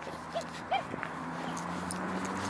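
A dog giving two short, faint whines a third of a second apart, over a steady low hum.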